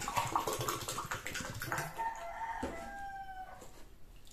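A rooster crowing once: a rough, noisy opening, then a long pitched note about halfway through that slides slightly and breaks off shortly before the end.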